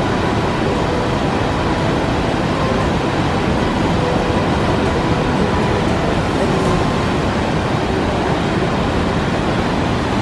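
Fast stream rushing over rocks in white water, a steady, even wash of water noise.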